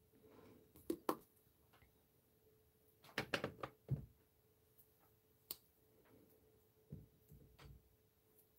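Faint scattered taps and short scrapes of a pencil and hand against a sketchbook page, with a small cluster about three to four seconds in, over a faint steady hum.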